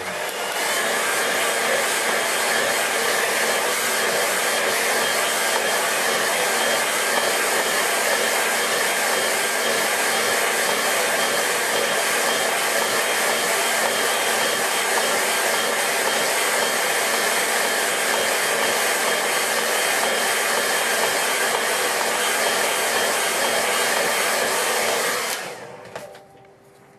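Hair dryer running steadily, a constant rush of air with a faint steady hum; it switches on just after the start and winds down shortly before the end.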